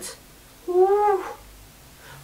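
A single short voiced call, one slightly arching tone about half a second long, a little after the start.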